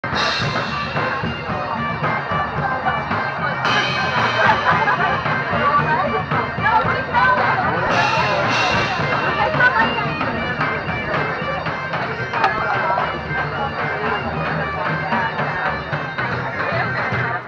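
Bagpipes playing a tune over their steady drones, with crowd chatter around them.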